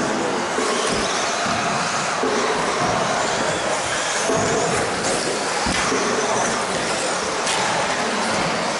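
Electric 2WD stock-class RC buggies racing around an indoor carpet track: a steady mixed noise of small motors and tyres, reverberant in a large hall.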